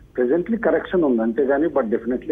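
Speech only: a man talking over a telephone line, his voice thin, with no treble.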